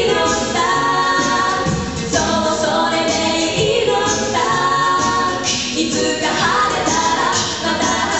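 A mixed male and female a cappella group singing in harmony, holding chords that change every second or two.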